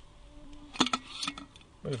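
A few clicks and a clink as a LifeStraw filter is pushed into a metal water bottle, sharpest a little under a second in, over a low steady buzz lasting about a second, like a fly passing close by.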